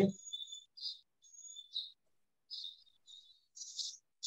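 Faint bird chirping in the background: a string of short, high chirps.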